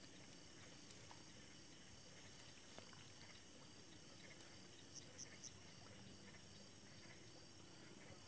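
Near silence with a faint, steady chorus of night insects such as crickets. A few faint short high ticks come about five seconds in.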